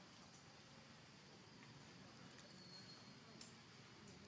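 Near silence: faint outdoor ambience with two faint clicks in the second half.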